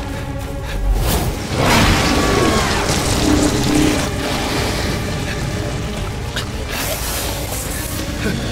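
Dramatic film score, with a deep boom about a second in and a loud rush of noise just after it.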